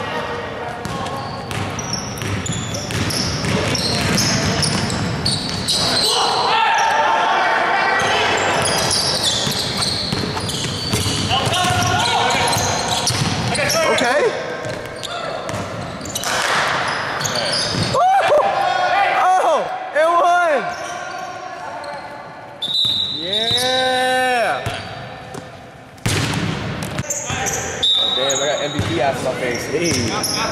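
A basketball game in a gym: a basketball bouncing on the hardwood floor in repeated thuds, with sneakers squeaking in short rising-and-falling squeals, and players' and spectators' voices echoing in the large hall.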